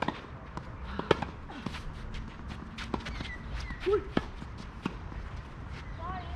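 Tennis doubles play on a synthetic grass court: a string of sharp clicks and knocks from racket-on-ball hits, ball bounces and footsteps, several a second, the loudest about a second in. A short voice sound comes near the four-second mark.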